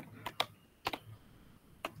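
Computer mouse clicking: about five short, sharp clicks spread over two seconds, three of them close together in the first half second.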